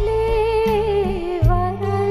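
Live band and string music: a violin section carries a slow, wavering melody over low bass notes, with low beats at the start and again about a second and a half in.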